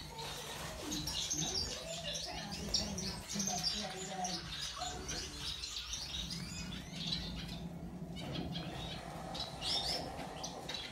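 A flock of small aviary finches, zebra finches among them, chirping and calling constantly in many overlapping short notes, with a brief lull about eight seconds in. A faint low steady hum sits underneath.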